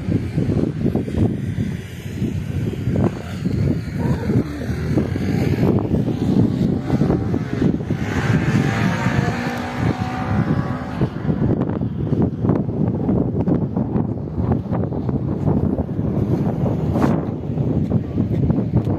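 Wind buffeting the microphone, a steady rough rumble with crackle. About eight seconds in, a hiss with a faint wavering tone swells and then fades out by about eleven seconds.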